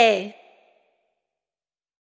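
The last sung note of a children's song, a single voice gliding down in pitch and fading out within the first half second, then complete silence.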